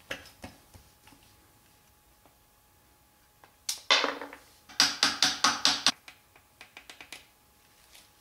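Ratchet wrench clicking in quick runs, about seven clicks a second, as the single 10 mm bolt holding the shift-rod ball on the underside of an Audi 016 transmission is backed out. A few softer clicks come before and after the main run.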